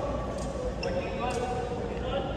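Badminton rackets striking a shuttlecock in a rally: two sharp cracks about a second apart, echoing in a large hall, with voices in the background.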